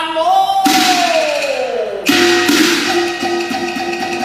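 Cantonese opera duet with orchestra: a male voice sings a long note that slides downward, then about two seconds in the accompaniment comes in with a steady held note.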